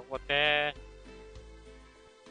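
A single wavering bleat from a livestock animal, about half a second long, over quiet background music.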